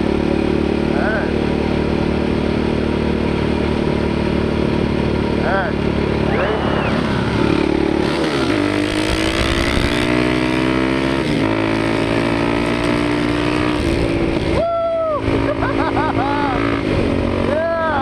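Dirt bike engine running steadily under wind and road noise. About eight and a half seconds in it revs up with rising pitch, steps down with a gear change a few seconds later, and then runs on steadily.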